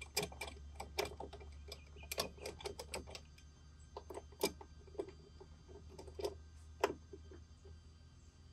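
Ratchet wrench clicking in short irregular runs with light metal clinks, as fittings on a Yamaha 115 hp outboard's power trim and tilt unit are worked by hand. A quick run of clicks comes about two to three seconds in.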